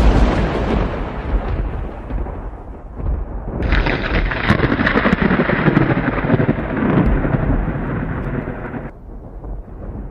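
A thunderclap fading away over the first three seconds, with a low rumble continuing. Then steady rain comes in suddenly about three and a half seconds in and drops off about a second before the end.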